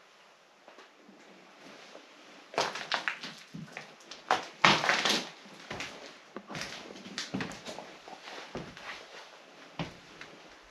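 Footsteps crunching and rustling over a floor littered with paper, plastic and debris. There is a loud burst of crackling from about two and a half to five and a half seconds in, then lighter scattered steps.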